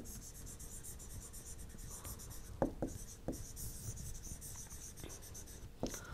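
Faint scratching of a stylus writing on a tablet, stroke by stroke, as a few words are handwritten, with a few light taps about halfway through.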